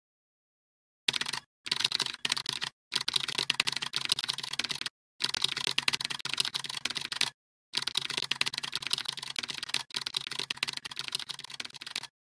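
Computer keyboard typing sound effect: rapid key clicks in runs of one to two seconds, with short pauses between runs, starting about a second in.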